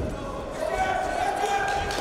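A dull thud of wrestlers' bodies and feet on the mat right at the start, then people's raised voices shouting in a large, echoing sports hall.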